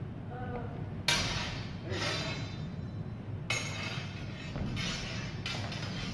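Metal practice longswords clashing blade on blade several times, each strike a sharp clang with a brief metallic ring; the first, about a second in, is the loudest.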